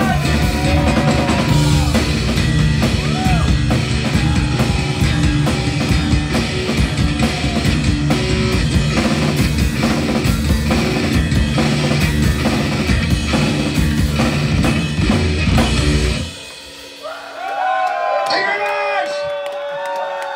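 Live rock band of electric bass, electric guitar and drum kit playing loudly, then stopping abruptly about sixteen seconds in. A couple of seconds later, shouts and whoops rise from the crowd.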